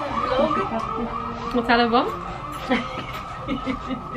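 A siren yelping in quick, even rises and falls, about four a second, that settles into a steadier held tone after about a second and a half.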